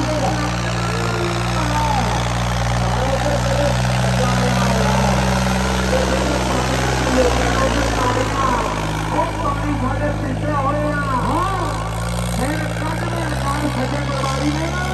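John Deere 5310 tractor's three-cylinder diesel engine running hard under heavy load as it drags a disc harrow, a steady low drone, with a crowd's voices and shouts over it.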